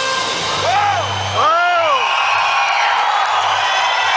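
Rock band's amplified electric guitars ringing out as a song ends, with crowd cheering. A few rising-and-falling whoops stand out between about half a second and two seconds in.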